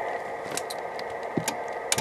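Steady low hiss with a faint thin high whine, broken by several light, sharp clicks; the last comes just before the end, as the transmitter is keyed and the wattmeter needle starts to lift.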